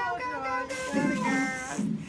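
Background music with a guitar melody, its notes stepping from one held pitch to the next, with a hiss through its middle second.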